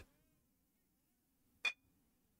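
Near silence with a faint steady low hum, broken once by a short sharp click about one and a half seconds in.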